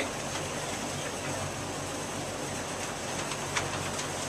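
Dry-erase marker writing a word on a whiteboard, a few faint short strokes over a steady background hum.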